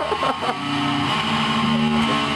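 Distorted electric guitar through an amplifier holding sustained notes, the pitch stepping down once about a second in.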